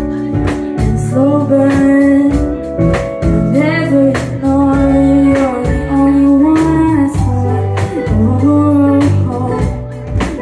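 Live indie rock band playing a song on drum kit, bass guitar, electric guitar and keyboard, with steady drum hits under a low bass line. A woman sings long held notes that bend in pitch.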